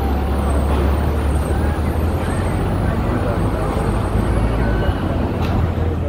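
Steady low rumble of a car moving slowly through busy city-street traffic, with a wash of street noise and faint voices.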